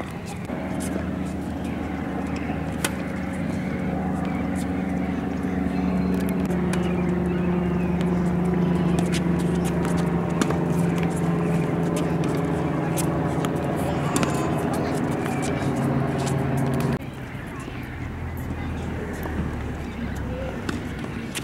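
A motor vehicle's engine running with a steady hum, its pitch shifting slightly partway through, then cutting off suddenly about seventeen seconds in.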